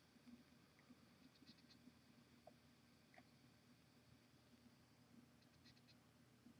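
Near silence: faint room tone with a low steady hum and a few very faint ticks.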